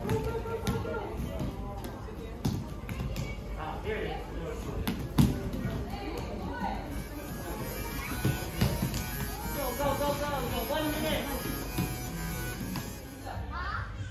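Indistinct children's voices and chatter in a large hall over background music, with occasional thuds of bare feet and bodies landing on training mats, the sharpest about five seconds in.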